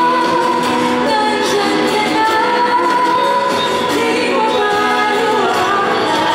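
A woman singing a slow pop ballad live into a microphone, holding long notes, over a strummed acoustic guitar.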